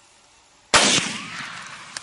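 A single rifle shot about three-quarters of a second in, its report dying away over the following second.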